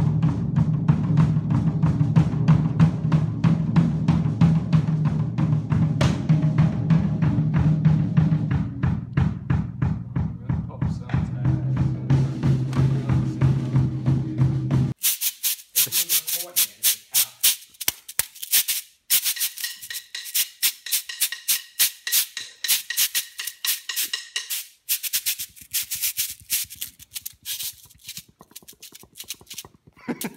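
Drum kit played with rapid, steady strikes. About halfway through it cuts off suddenly, giving way to close-microphone ASMR sounds: sparse crisp clicks and hiss.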